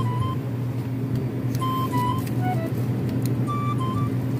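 A steady low hum, as from refrigerated display cabinets, under a sparse melody of short held notes at different pitches.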